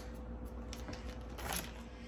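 Plastic bag of shredded cheese rustling as it is handled and set down on a countertop, with one brief louder crinkle about one and a half seconds in. A faint steady hum runs underneath.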